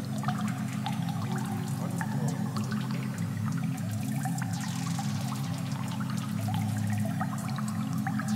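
Berlin School-style electronic synthesizer music: a pulsing sequenced bass line from the Waldorf Quantum, with thin ticking percussion from the Korg Electribe ESX. A hissing noise sweep rises and falls about halfway through.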